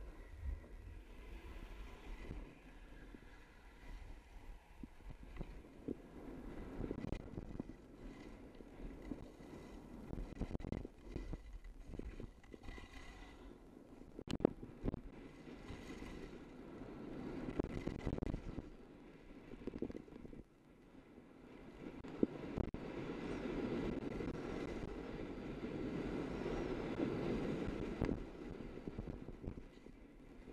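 Skis sliding and carving on packed, groomed snow, with wind rushing over a head-mounted camera's microphone. The scraping rises and falls with the turns and is loudest near the end.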